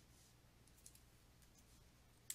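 Near silence: faint room tone with a small click about a second in.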